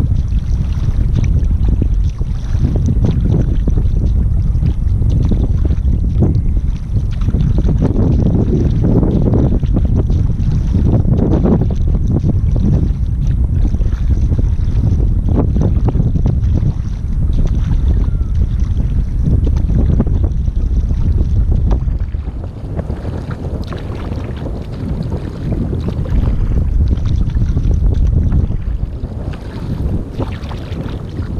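Wind buffeting the microphone of a bow-mounted camera on a surfski. Under it come the repeated splashes of a wing paddle's strokes and water rushing along the hull. The wind rumble eases a little about two-thirds of the way through.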